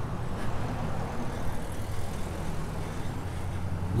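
Town street traffic: cars driving past, a steady low rumble of engines and tyres on the road.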